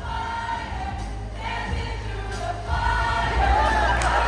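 A large group of students singing together as a choir over musical accompaniment with a steady bass line; the singing grows louder near the end.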